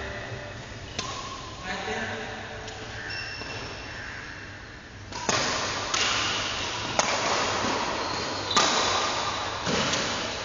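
Badminton rackets striking a shuttlecock: sharp cracks, one about a second in, then a rally with a hit roughly every second in the second half, echoing in a large sports hall. Short high squeaks of court shoes and indistinct voices sit underneath.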